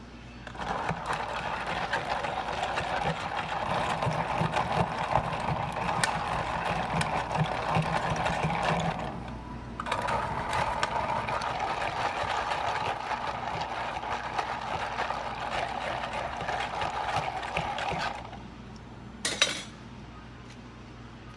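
A long spoon stirring an icy yogurt slush in a plastic cup, ice scraping and rattling against the cup as the mango puree is mixed up from the bottom. This is done to two cups in turn, about eight seconds each with a short pause between them, followed by a sharp click near the end.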